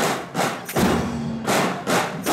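Marching drum corps drums struck in a beat: a handful of sharp, loud hits, a few in the first second and a pair near the end.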